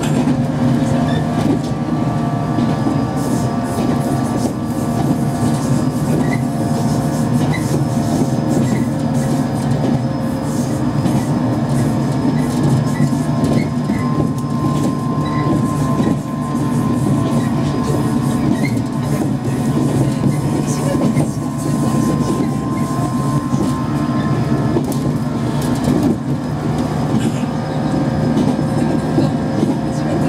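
JR East 115 series electric train running, heard from its KuMoHa 115 motor car: the MT54 traction motors hum with a steady whine over the rumble and clatter of the wheels on the rails.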